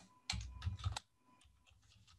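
Keystrokes on a computer keyboard: a quick run of clicks through the first second as a currency-pair symbol is typed into a chart's lookup box, then a few faint clicks.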